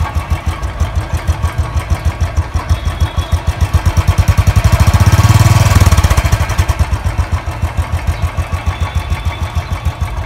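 Royal Enfield Bullet 350's single-cylinder twin-spark engine idling through its stock exhaust with an even, quick beat. About halfway through it is revved once, rising in pitch and loudness, then falls back to idle.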